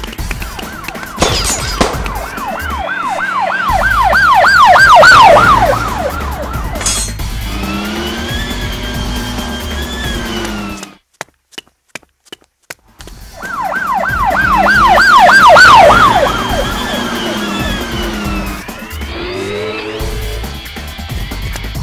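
Police siren sound effect: fast repeated yelping sweeps that grow louder, then a slower rising-and-falling tone. It cuts out for about two seconds in the middle, apart from a few clicks, then the same sequence repeats.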